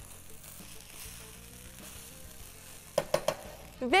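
Rice sautéing in butter and olive oil with onions and pine nuts, sizzling steadily in a pot as it is stirred with a spoon. A few short knocks come about three seconds in.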